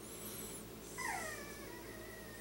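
Pomeranian whining faintly: a thin, very high squeak, then a falling whine about a second in. It is a sign of the dog's excitement at the cockatiel it has been told not to go after.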